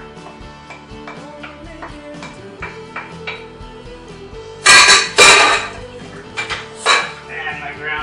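Kitchenware clattering: two loud clanks a little past halfway, then a few lighter clinks, as onions are tipped and scraped from a plate into a pot. Background music plays throughout.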